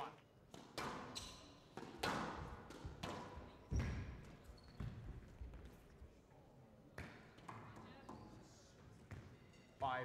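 Squash rally: the ball struck by rackets and smacking off the walls, a sharp knock roughly every second at an uneven pace, with the loudest hits about two and four seconds in.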